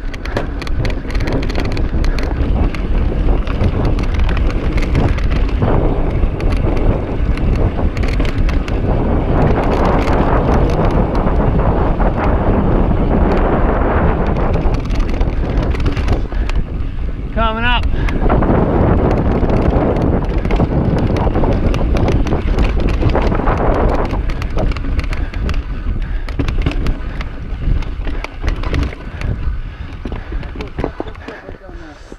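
Mountain bike ridden over slickrock: wind rumbling on the chest-mounted camera's microphone, with the tyres and bike rattling in quick clicks and knocks over the rock. About seventeen seconds in comes a brief wavering pitched sound. The noise eases near the end as the bike slows.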